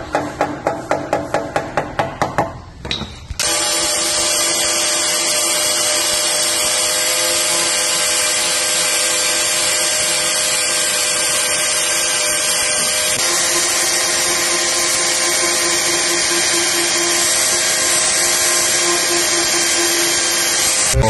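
A hammer knocking quickly against the rusted steel rocker panel of a BMW E36, about four blows a second, breaking off rust and paint that has lost its grip. About three seconds in an angle grinder with an abrasive disc starts suddenly and runs steadily, grinding the rust off the sill.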